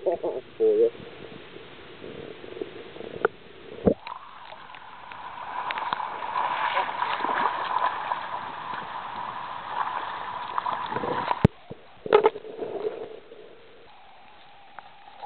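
Shallow river water splashing and rushing as someone wades through it to land a fish. The water sound swells about four seconds in and cuts off abruptly near the end.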